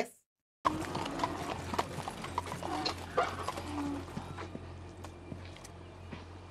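Horses' hooves clip-clopping on a paved road: a pair of harnessed horses walking. It starts about half a second in, after a brief silence, and slowly gets quieter toward the end.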